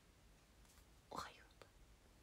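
Near silence, broken about a second in by one brief, soft whispered vocal sound from a woman, followed by a faint click.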